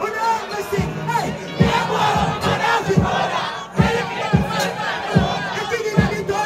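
Live dancehall crowd shouting and chanting along with a performer's amplified voice on the microphone, with deep thumps every second or so.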